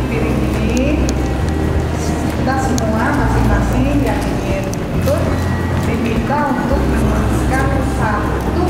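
A woman talking to a gathered audience, with crowd murmur and soft background music beneath.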